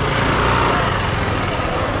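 Small motor scooter engine idling close by, a steady low running sound under street noise.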